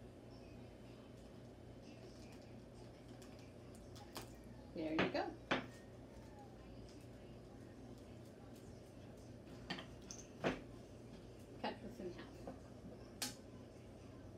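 Scattered knocks and clinks of tools and objects handled on a worktable, in three short clusters over a low room hum.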